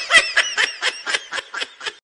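Laughter: a string of short, high-pitched laugh pulses, about four a second, trailing off a little toward the end.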